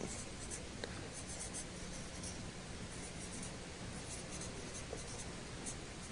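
Marker pen writing words by hand: faint, scattered scratchy strokes.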